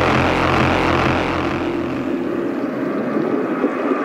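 Darkstep drum and bass in a beatless passage: a dense, droning noise texture with no drum hits, its deep bass fading out about two-thirds of the way in.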